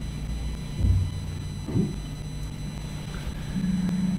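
Heirloom tomatoes dropped into a glass blender jar: a dull thump about a second in and a lighter knock near two seconds, over a steady low rumble.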